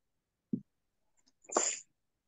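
A faint low thump, then a short breathy burst of a person's voice through a video call, about a third of a second long.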